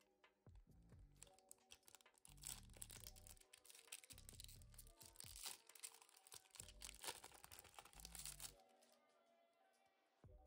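Foil booster-pack wrapper crinkling and tearing as it is opened, a dense run of small crackles that stops about a second and a half before the end. Quiet background music plays underneath.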